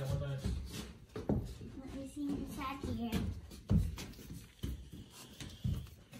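Mostly voices: low, indistinct child and adult speech and murmurs, with a few short knocks and rustles of handling.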